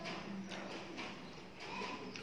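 A person chewing a mouthful of rice and curry, with repeated wet mouth clicks and smacks.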